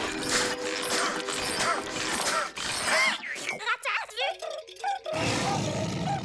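Cartoon soundtrack: background music with a shark character's straining grunts and roars.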